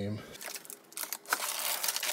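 A foil-backed sheet of Noico butyl sound-deadening mat crinkling and rustling as it is handled, a dense crackly rustle starting just under half a second in.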